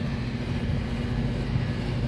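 Steady drone of rooftop HVAC equipment running, a low hum with a faint steady tone in it.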